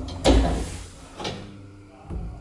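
Elevator door shutting with a heavy thump about a quarter second in, followed by a quieter knock about a second later.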